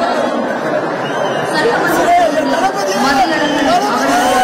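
Crowd chatter: many voices talking at once, none standing out, at a steady level.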